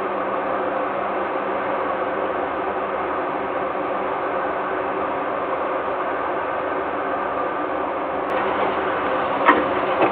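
Steady machinery hum with several fixed tones, picked up by the nest camera's microphone. A faint click comes near the end, then a short sharper sound about half a second before the end.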